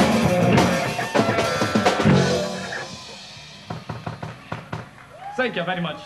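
A punk rock band playing live, with distorted electric guitar, bass and drum kit, ends its song about two seconds in and the chord rings out. A few scattered knocks follow, and a man's voice comes in near the end.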